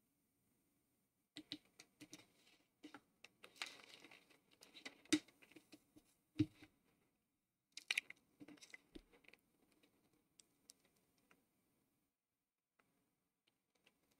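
Near silence in a small room, broken by faint scattered clicks and soft rustles, with a few sharper ticks in the middle; the sounds thin out and stop about two thirds of the way through.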